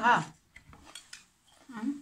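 Metal spoon clinking and scraping lightly against a serving platter, in a few short taps.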